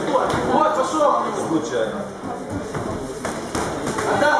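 Indistinct ringside voices calling out during an amateur kickboxing bout, with a few sharp thuds of blows landing in the second half.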